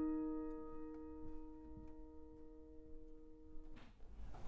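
Yamaha CLP785 digital piano: a held chord rings on through its speakers and fades slowly, then stops just before the end.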